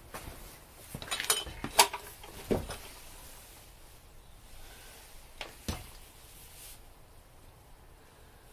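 Handling noise from the camera being moved and set in place: a quick cluster of sharp clicks and knocks, a duller thump soon after, then two more clicks about halfway through.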